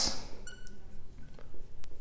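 Dry-erase marker writing on a whiteboard: faint strokes with a brief high squeak about half a second in and a couple of light ticks later on.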